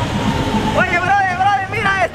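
Street traffic with a small car driving off. About a second in, a very high-pitched voice calls out over it.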